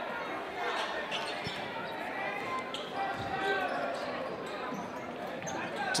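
A basketball being dribbled on a hardwood gym floor, a few bounces heard over the hum of crowd and player voices echoing in the gym.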